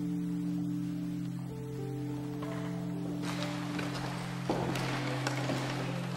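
Music: held low chords with slow, sustained notes moving above them.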